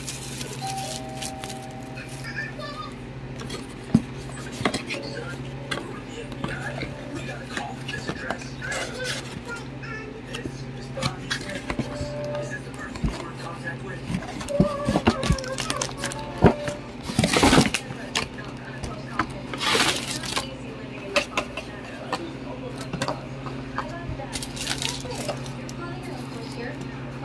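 Plastic shrink wrap being torn and crinkled off a cardboard trading card box, then the box opened and foil card packs handled: scattered crinkles and clicks, with two louder crinkling rustles a little past the middle. A steady low hum runs underneath.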